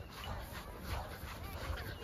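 Quiet outdoor background on an open field: a low rumble with faint distant children's voices, one faint call about a second in.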